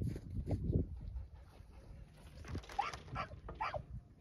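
A dog barking about three times in quick succession in the second half, short calls that rise in pitch. A few dull thumps come in the first second.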